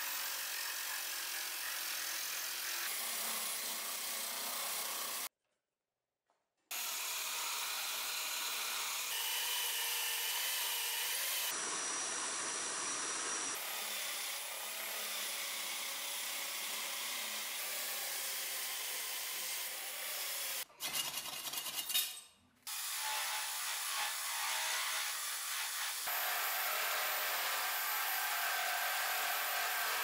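A wooden handle spinning in a drill-driven homemade lathe, with a chisel and then a file scraping and cutting the turning wood over the drill motor's running whine. The sound changes abruptly at several edits and drops out to silence for about a second and a half about five seconds in.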